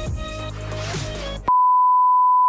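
Background music with a deep bass cuts off about one and a half seconds in and is replaced by a steady, pure, high test-tone beep, louder than the music. It is the reference tone that goes with TV colour bars.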